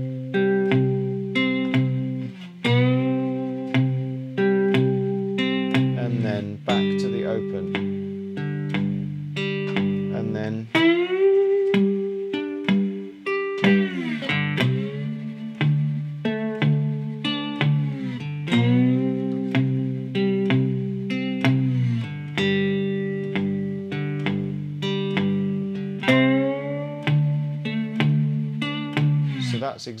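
Three-string cigar box guitar in GDG tuning played with a slide, the thumb keeping a steady bass while finger notes fall late between the beats: a swung, shuffle-feel 12-bar blues. Notes slide up into pitch every few seconds.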